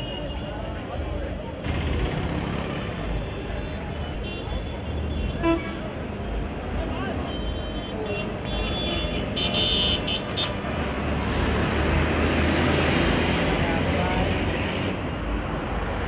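Busy roadside street noise: a crowd talking over passing traffic, with car horns honking, the clearest honks about ten seconds in.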